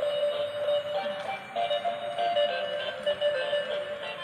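Simple electronic melody of changing notes played by a battery-powered transparent gear toy car.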